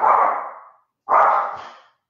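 A dog barking twice, about a second apart.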